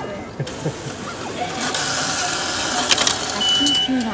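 Cinema ticket vending machine running its mechanism with a steady whirr as it processes the cash payment and dispenses. A few sharp clicks come about three seconds in, followed by a short single-pitch beep.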